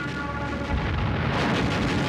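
Aircraft drone with steady held tones, then a long rumbling explosion that swells up about halfway through and stays loud: a bomb blast during an air raid.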